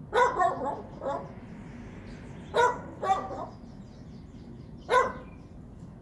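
Small dog barking: about six short, sharp barks in loose groups, two quick ones at the start, then one, then a pair in the middle, and a last one near the end.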